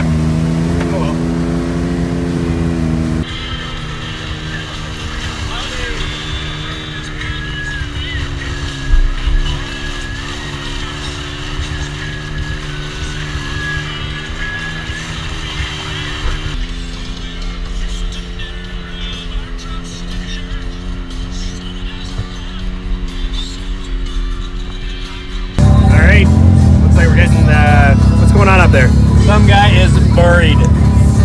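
Can-Am Maverick X3 side-by-side's turbocharged three-cylinder engine running at a steady, near-constant throttle while driving a mud trail. Its sound changes abruptly about 3 and 17 seconds in as the camera view switches.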